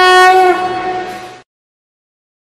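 A conch shell blown in one long held blast that bends slightly in pitch about half a second in, then fades and cuts off about a second and a half in.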